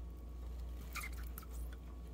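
Faint soft squishing and a few light ticks as a thick paste of coconut milk, kaolin clay and powdered sugar is squeezed out of a flexible plastic cup into melted soap oils, over a low steady hum.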